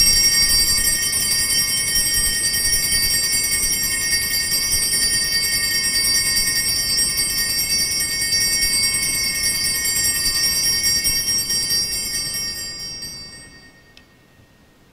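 Altar bells rung continuously at the elevation of the consecrated host, a steady high jingling ring that fades out near the end.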